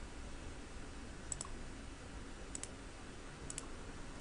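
Computer mouse button clicks: three short double clicks about a second apart, over a faint low room hum.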